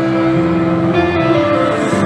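Live concert music from the stage, sustained piano and guitar notes at the start of a song, recorded from within the audience of a large hall.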